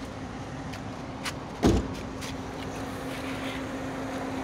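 A vehicle engine idling with a steady low hum, and one heavy thud about one and a half seconds in.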